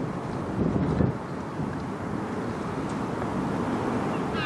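Wind buffeting the microphone, a steady low rumble of gusty noise that rises briefly about a second in.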